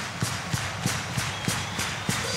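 A rock drum kit keeping time alone in a sparse break of a live heavy-metal song, short cymbal-and-drum strokes about three a second, with the last of the amplified band ringing underneath.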